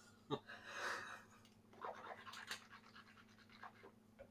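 Faint sounds of drinking at close range: a breathy sip or swallow from a glass and a plastic water bottle early on, then a few small clicks and handling noises around two seconds in.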